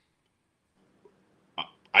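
Near silence for about a second and a half, then a brief vocal sound, and a man starts speaking at the very end.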